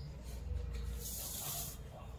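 Pencil drawing a line along a ruler on paper: a short, soft scratching hiss about a second in, over a faint low rumble.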